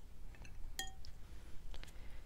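A paintbrush knocking against a hard container or palette: one light, ringing clink a little under a second in, with a few fainter taps around it as brushes are handled and swapped.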